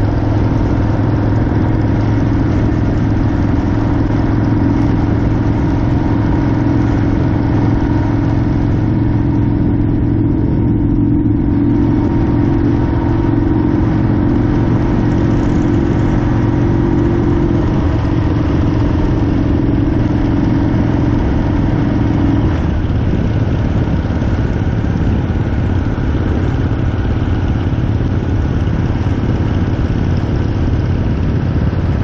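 Harley-Davidson motorcycle V-twin engine at a steady cruise on the highway, heard from the handlebars with wind rush over it. The engine note shifts slightly about three quarters of the way in.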